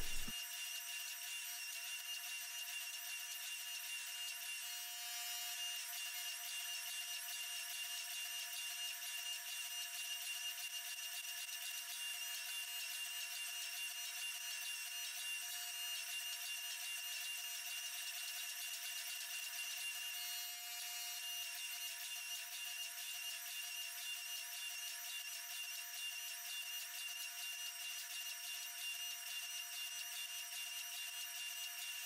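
Hydraulic forging press running, a faint steady machine whine, while its flat dies draw out a hot steel billet.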